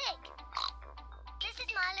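A cartoon pig's snort, voiced by a child actor, mixed with a child's voice talking and light children's background music.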